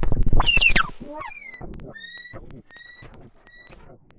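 Small handheld Postcard Weevil synth: a loud pitched tone sweeps quickly downward in the first second, then short chirps repeat about every 0.7 s, growing fainter, like echo repeats.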